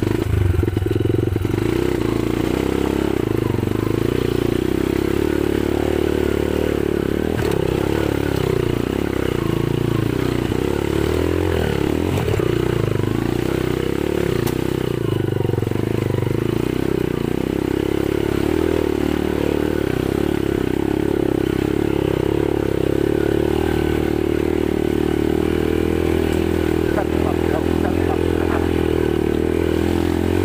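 Motorcycle engine running at a steady, low speed while riding slowly over a rocky dirt trail, with clatter from the bike jolting over the stones.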